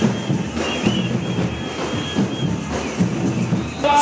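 Protest march crowd din with batucada samba drums playing, a dense, irregular pounding and clatter with a faint high thin tone over it for a second or two.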